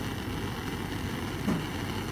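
Bunsen burner burning with its blue working flame, a steady even noise.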